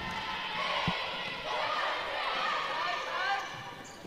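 Volleyball serve: a single smack of a hand on the ball about a second in, over steady crowd chatter.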